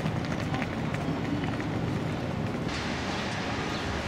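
City street ambience: a steady hum of traffic and street noise. About three-quarters of the way through it cuts abruptly to a different outdoor recording with a brighter, hissier sound.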